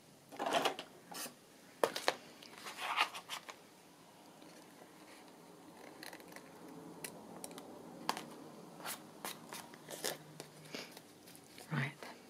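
Scissors snipping paper while trimming around a cut-out: a few longer cuts in the first few seconds, then a run of short, sharp snips and clicks, with the paper being handled between them.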